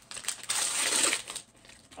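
Gift wrapping crinkling and rustling as a flat present is unwrapped by hand, with small crackles, for about a second and a half before it dies down.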